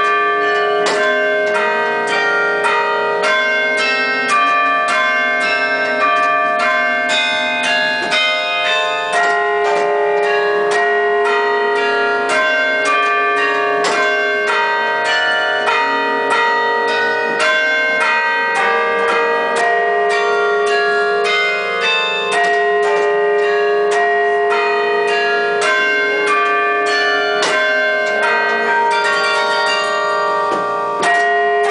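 Carillon bells played from the baton keyboard: a continuous run of struck notes, each ringing on and overlapping the next, over a long-sounding low bell tone.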